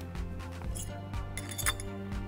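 Background music with a steady beat, with a few light metal clinks about a second in and again near the end, the loudest just before the end, as the weight is changed on a Technogym Unica home multi-gym's weight stack.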